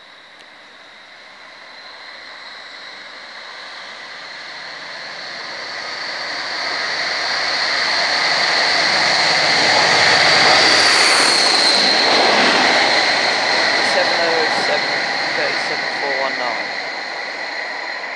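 Pair of diesel locomotives, DRS Class 57 No. 57007 leading Class 37 No. 37419, passing at line speed. The sound builds steadily as they approach and is loudest about ten seconds in, when they go by. A high engine whine drops slightly in pitch as they pass, and the noise then fades as they run away.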